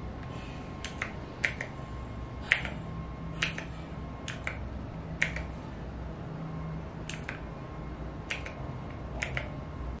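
Mechanical keycaps on a Divoom Ditoo Plus clicking as they are pressed one at a time to steer a Snake game, about nine sharp clicks at uneven intervals over a low steady background hum.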